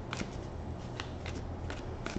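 Tarot deck being shuffled and handled in the hands: a string of soft, irregular card flicks and clicks.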